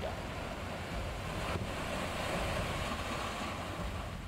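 Steady rushing noise of the Alaknanda river in flood, its swollen water surging past.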